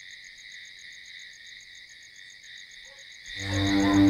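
Faint, steady night-insect ambience: a high, even chirring with a quick pulse of about eight beats a second. About three seconds in, a low sustained background-music drone swells in and becomes the loudest sound.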